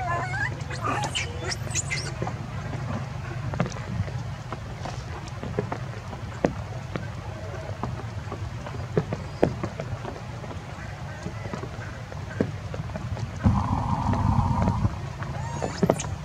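Monkey calls: a few high, sliding squeals in the first two seconds, then scattered clicks, and a louder, longer call near the end.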